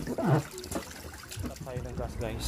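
Water lapping and trickling in an inflatable paddling pool as a child swims, with brief children's voices.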